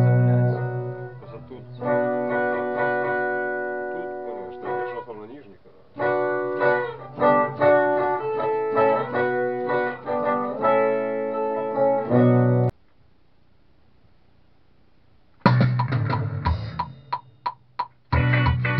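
Electric guitar playing chords that ring out, breaking off for a few seconds about two-thirds through, then coming back in with short, sharp chord stabs near the end.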